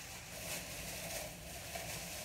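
Faint crinkling of the foil wrapper being picked and peeled from the neck of a sparkling wine bottle.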